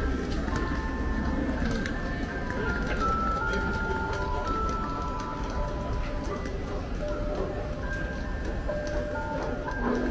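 A clock tower's show music playing a slow, chiming melody of long held notes that step up and down, over a crowd talking. There is a sharp knock near the end.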